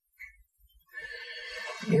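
A man draws a long audible breath, about a second long and growing louder, just before he starts speaking near the end.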